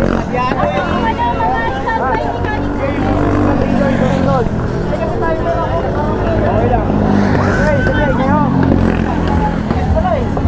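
Go-kart engines running as karts lap the circuit, a steady low hum, with people talking close by over it.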